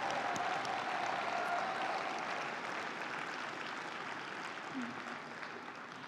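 Audience applauding, slowly dying away.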